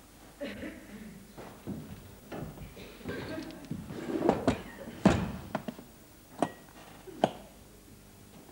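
Scattered knocks and thuds of people moving about a theatre stage, with faint low voices underneath. The sharpest knocks come about five, six and a half and seven seconds in.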